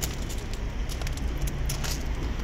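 Footsteps crunching on gravel as a series of short irregular clicks, over the low steady hum of the Suzuki Swift's 1.3-litre petrol engine idling.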